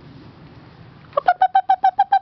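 A person calling a puppy with a quick, high-pitched string of short "bup" sounds, about nine a second on one steady pitch, starting about a second in.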